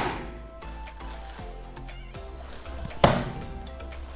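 Soft background music, with one sharp slap about three seconds in as a foot strikes a handheld taekwondo kicking paddle.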